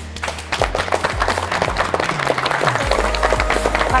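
A small group clapping, many quick uneven claps, over background music with a steady bass line.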